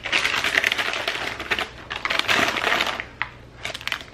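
Plastic snack packets crinkling as they are handled and set into a woven basket, in two long bursts with a short click near the end.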